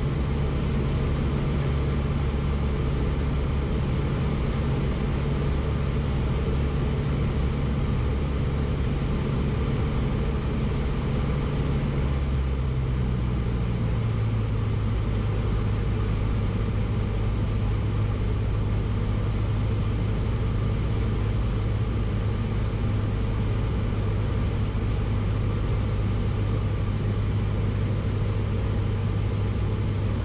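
Cessna light aircraft's piston engine and propeller droning steadily, heard inside the cabin. About halfway through, the drone steps down to a lower pitch as the engine speed drops on the approach.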